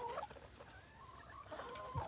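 Faint, intermittent clucking of hens in a chicken run.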